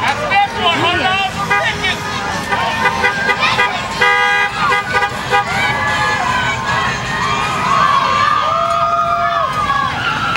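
Car horns honking in short toots, with one longer blast about four seconds in, over people shouting and cheering as parade vehicles drive past.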